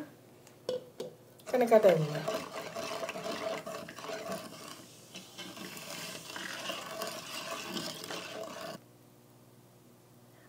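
A whisk stirring a sugar, water and orange-juice syrup in a non-stick pan, swishing through the liquid and scraping the pan for several seconds, after two light knocks on the pan. It stops about a second before the end.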